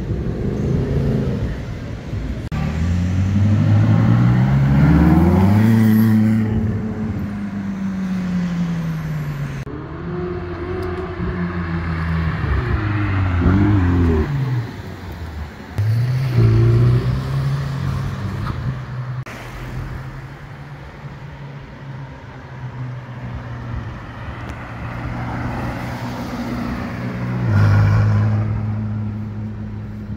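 A run of sports and performance car engines accelerating hard, one clip after another, with abrupt cuts between them. The engine notes rise in pitch through the gears and drop at each shift, with loud bursts of revs about halfway through and again near the end.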